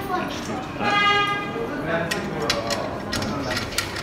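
Voices of people talking in a large hall, with a brief high tone about a second in and a few small clicks near the end.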